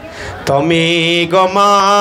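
A man's voice singing a devotional chant into a microphone, starting about half a second in and holding long, steady notes.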